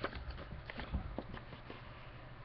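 Paper envelope being handled: a few soft ticks and crinkles, with a low thump just before a second in, then quieter.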